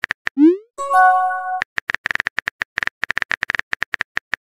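Chat-story sound effects: rapid keyboard-typing clicks, then a short rising pop and a brief electronic chime as a message appears, followed by more rapid typing clicks.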